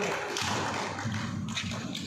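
A few sharp taps of badminton rackets striking the shuttlecock in a rally.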